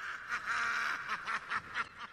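A high, nasal, maniacal cackling laugh: one drawn-out note, then a run of short bursts about four a second.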